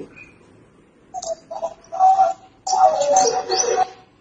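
Bird calls in several short bursts, starting about a second in and growing longer and fuller near the end.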